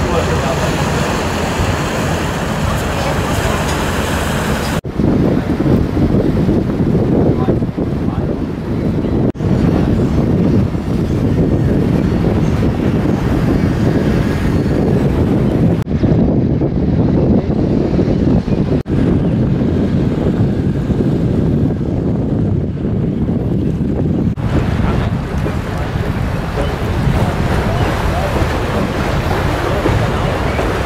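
Wind buffeting the camera microphone over the rush of water, a loud, dull rumble that cuts off and restarts abruptly several times as the clips change.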